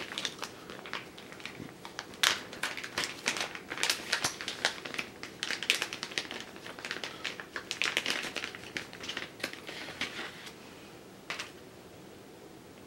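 Clear plastic bag crinkling and crackling in irregular bursts as a screwdriver is worked out of it, easing off about ten seconds in, with one last small click.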